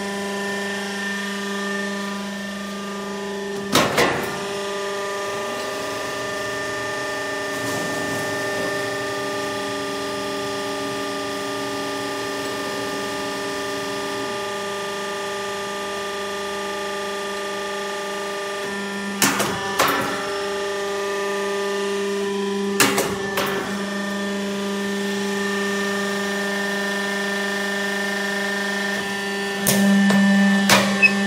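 Z purlin roll forming machine running with a steady mechanical and hydraulic hum. Four sharp metallic bangs ring out at irregular intervals, the first a few seconds in and the last near the end, as the hydraulic cutting die strikes the steel profile.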